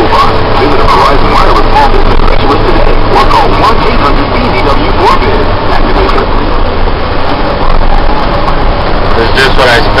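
Engine of a heavy snow-removal machine running steadily under load, heard loud from inside the cab as a constant low drone. Faint, indistinct voices sit underneath.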